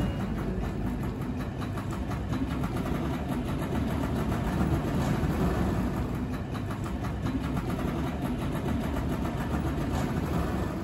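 A motor vehicle engine running steadily in the street, with no breaks or changes in level.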